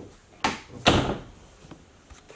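An interior door shutting: two knocks about half a second apart, the second one louder.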